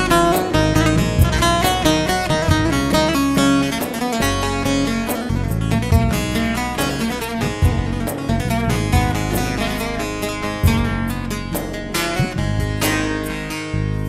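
Instrumental break in a Turkish folk song (türkü): a plucked string instrument playing a quick run of notes over a steady accompaniment.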